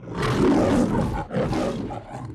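The MGM logo lion roaring: one long roar, then a brief break about a second in and a second, shorter roar.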